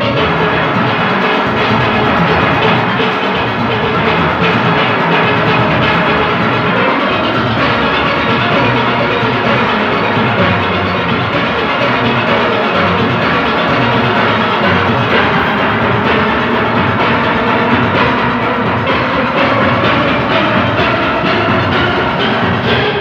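A large steel orchestra playing live and loud: many steelpans, from the small high pans to the big bass pans, with percussion keeping a steady beat under them.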